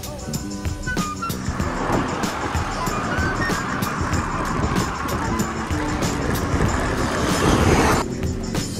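Background music over road noise from riding along a road with car traffic. The rushing grows louder toward the end and cuts off suddenly.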